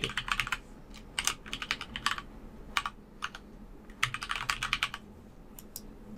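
Computer keyboard typing in several short bursts of keystrokes, with pauses between them.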